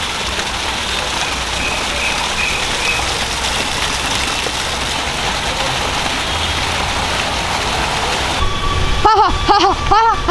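Decorative fountain water splashing, a steady rush of falling water. Near the end it gives way to a louder pitched sound that rises and falls several times in quick arcs.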